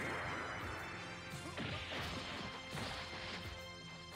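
Anime fight sound effects: crashing, hissing impact noise that swells again about one and a half and nearly three seconds in, with music under it, gradually getting quieter.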